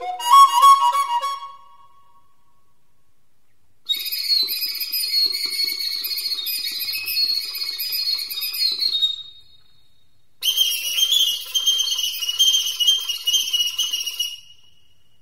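Recorder (flauta de bisel) playing a short lower phrase, then after a pause two long stretches of very high, rapidly fluttering whistle-like notes, separated by a second pause. The high fluttering imitates the very high song of the European serin.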